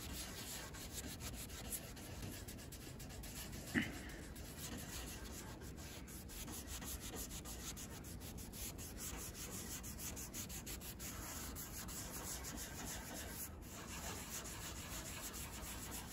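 Microfiber cloth rubbing dye onto old cabinet wood: a faint, continuous scratchy wiping with many quick strokes. One brief louder sound about four seconds in.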